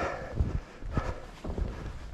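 Footsteps in deep snow: a few soft, dull thuds at an uneven pace.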